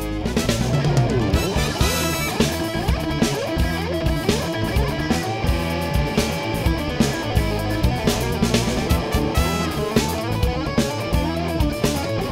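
Instrumental break of a funk-rock song: electric guitar playing a gliding, bending lead line over bass and drum kit, with a steady beat and no vocals.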